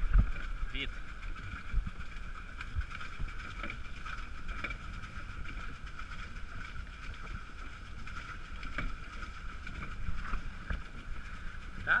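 Water and wind noise aboard a pedal catamaran under way on choppy sea: an irregular low rumble with faint knocks, and a steady faint high-pitched hum throughout.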